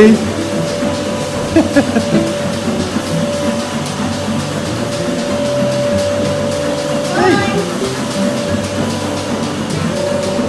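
Milking-machine vacuum pump running with a steady hum, under background music, with a couple of brief voices.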